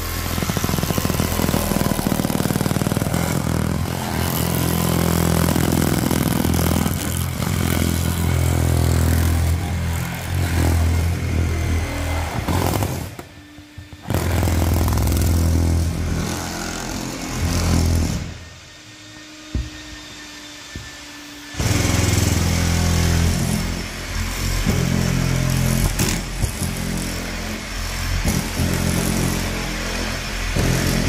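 Cordless oscillating windshield cut-out knife running and buzzing as it cuts through the urethane bead along the bottom of a windshield, its pitch shifting with the load. It stops briefly about 13 seconds in and again for about three seconds near the middle, then runs on.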